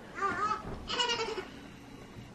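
Newborn baby fussing: two short, high, wavering cries about half a second apart.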